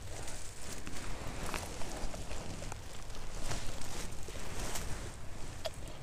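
Dry pine needles and forest litter rustling and crackling as a hand brushes them aside and pulls a saffron milk cap mushroom out of the soil, with a few small snaps scattered through.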